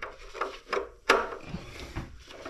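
Gloved hands working among the wiring and plastic parts in the open electronics compartment of an Ariston Velis Evo electric water heater: rubbing and scraping with a few clicks, and a sharper knock about a second in.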